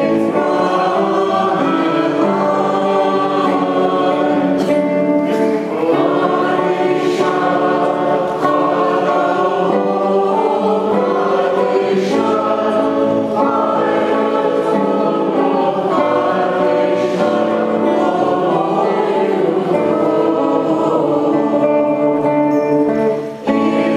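Church choir singing a hymn in long, held phrases, with brief breaks between phrases.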